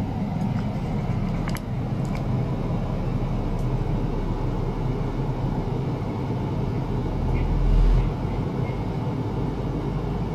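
Steady low rumble of background noise, with faint clicks about one and a half and two seconds in and a brief low swell about eight seconds in.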